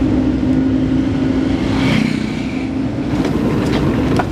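A Suzuki car's engine and road noise, steady while driving, heard from inside the cabin.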